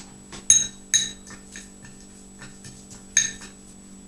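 A spoon clinking against a small glass bowl of dry spice mix: three sharp, ringing clinks, two close together about half a second and a second in, and a third about three seconds in.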